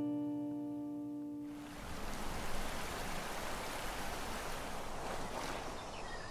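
An acoustic guitar chord rings out and fades away over the first second and a half. Then shallow river water rushes steadily.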